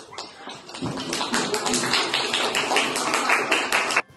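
Children's hands clapping, a fast dense patter of many claps that swells about a second in and cuts off suddenly at the end.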